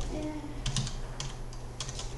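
Typing on a computer keyboard: several quick key clacks at an uneven pace.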